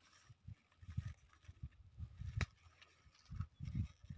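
Faint, irregular low thumps and bumps with one sharp click a little past halfway: handling noise from fingers and a hand-held camera working among strawberry plants.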